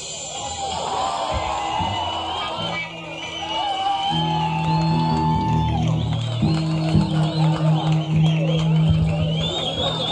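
Live funk-rock band playing an instrumental stretch: electric guitar lines over bass guitar, with held low bass notes setting in about four seconds in.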